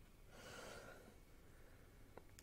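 Near silence, with one faint breath drawn in from about a third of a second to a second in.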